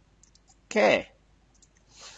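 A few faint, sharp clicks before and after a man's spoken "okay", with a brief soft hiss near the end.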